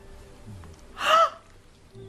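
A woman's short, high gasping yelp of pain about a second in, as the dentist probes her bad tooth.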